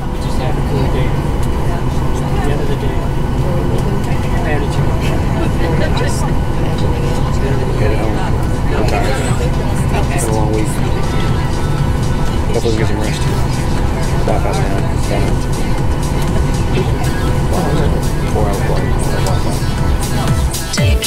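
Steady, loud cabin noise of an airliner in flight, the even rumble of its jet engines and the air rushing past the fuselage, with indistinct voices murmuring under it.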